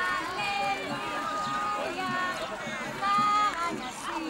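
Voices of adults and children in a crowd, talking and calling out over one another. Some high children's voices are held briefly, and the voices get louder just after three seconds in.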